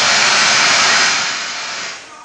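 A loud rush of hiss-like noise, a sound effect over the theatre's speakers, starting abruptly and easing down after about a second and a half.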